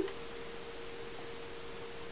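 Room tone: a steady, faint single-pitched hum over a light hiss, unchanging throughout.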